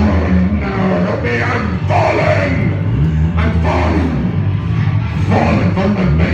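Live rock band playing loudly, with a deep bass line moving between notes and a man singing into a microphone over it.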